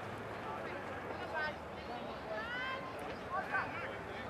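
Distant shouting from players and spectators at a field game: several separate shouts a second or so apart over a steady outdoor murmur.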